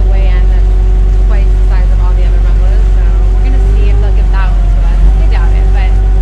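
Motorboat engine running steadily under way, a loud low rumble with a steady hum over it, and wind on the microphone.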